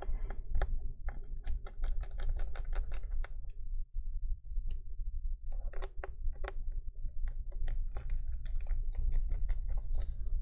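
Rapid light clicks and ticks of a small screwdriver driving a tiny hinge screw into a MacBook Air's metal chassis, with fingers handling the parts. The clicking stops for about two seconds midway, then resumes, over a steady low hum.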